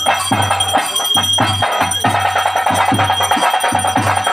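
Bhuta kola ritual music: drums beating a steady rhythm of about three strokes a second, with a held high ringing tone above them.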